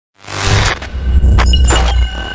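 Intro logo sting: a sound-designed glitch effect with a crashing, shattering hit over a deep bass rumble. It starts suddenly out of silence about a quarter second in, with a couple of sharp hits later on.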